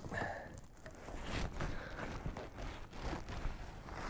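Fishing rod being slid into a plastic rod holder on a kayak: scattered light knocks and rubbing from the rod and holder, over a low steady rumble.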